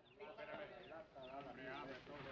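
Faint voices of several men overlapping, wavering in pitch.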